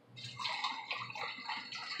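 Lemonade poured from a plastic gallon jug into a glass of ice, splashing and gurgling as it fills the glass.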